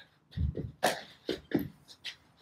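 A few short, breathy vocal sounds from a man, spaced through about two seconds, around a single spoken word.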